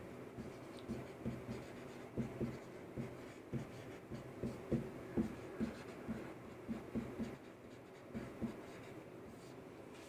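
Marker pen writing on a whiteboard: an irregular run of faint short strokes and taps as words are written, easing off shortly before the end.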